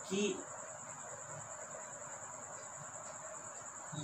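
A steady high-pitched chirring that continues without change, with faint scratching of a marker pen drawing a curved line on a whiteboard.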